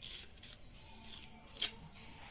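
A small metal modelling tool scraping and cutting cement while shaping teeth in the mouth of a cement statue: a few soft scrapes, with one sharper scrape about one and a half seconds in.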